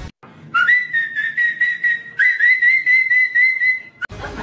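A high whistle blown in two long blasts, each about a second and a half, with a fast warble in its pitch. The second blast starts about two seconds in.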